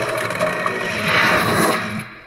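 Logo-intro sound effect: a loud, dense noisy whoosh that swells about a second in and then starts to fade near the end.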